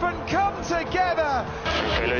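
Television race commentator talking over a steady background music bed, with a burst of noise near the end.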